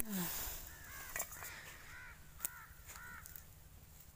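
A bird calling faintly outdoors: a run of about six short, arched calls over two seconds, starting a little after a second in, with a few sharp clicks among them.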